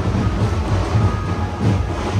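A loud, steady low rumble of bass-heavy procession music mixed with the noise of a packed crowd.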